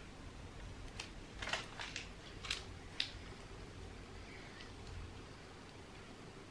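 Quiet handling sounds of a piping bag of buttercream being squeezed onto a cake: a handful of short crinkles and clicks from about one to three seconds in. A low steady hum runs underneath.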